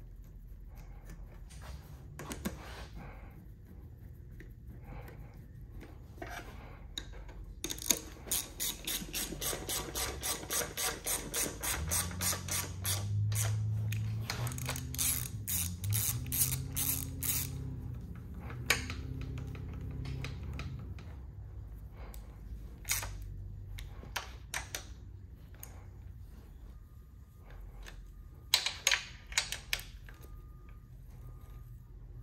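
Ratchet wrench clicking in quick, even runs as oil pan bolts are run down on an engine, with scattered clinks of bolts and metal parts. A low hum comes in under the clicking for several seconds in the middle.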